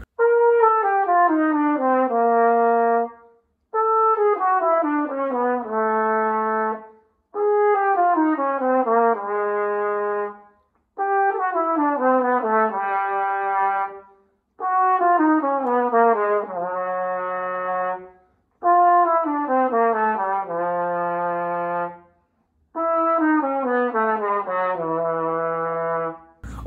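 Yamaha YFH-635 flugelhorn playing seven short descending runs with brief pauses between them, each settling on a held low note. The low notes reach further down toward the bottom of the horn's range as the runs go on.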